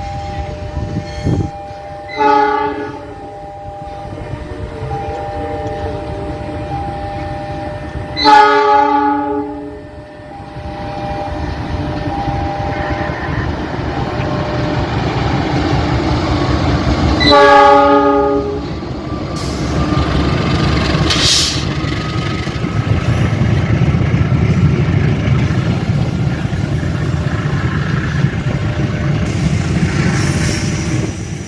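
A KAI diesel-electric locomotive sounds its horn three times as it approaches: a short blast about two seconds in, a longer and loudest blast about eight seconds in, and another about seventeen seconds in. Between and after the blasts comes the rumble of the locomotive and its train passing close, which grows louder through the second half.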